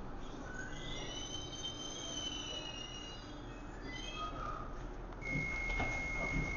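Docklands Light Railway B07 Stock train heard from inside the carriage, squealing with several high, slightly wavering tones as it brakes to a stop at a platform. About five seconds in, a steady high beep starts as the doors begin to open.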